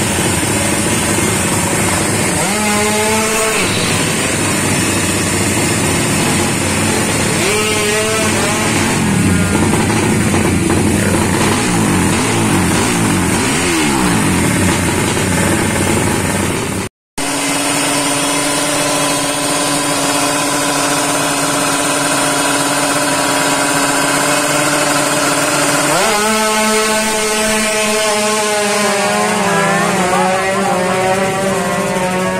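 Small drag-race motorcycle engines revving, the pitch rising and falling again and again. After a sudden cut, an engine holds a steady high note. A few seconds before the end its revs climb steeply in a long rising run, as a bike accelerates.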